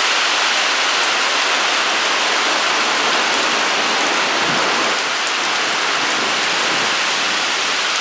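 Heavy rain pelting the surface of a lake, a dense, steady hiss.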